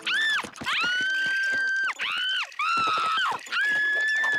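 A cartoon girl's panicked, high-pitched screaming: about five shrieks in a row, some short and some held for over a second, as a squirrel gets into her pants.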